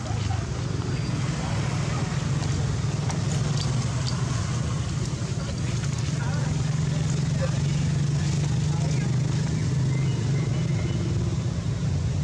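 Steady low rumble of a running motor engine.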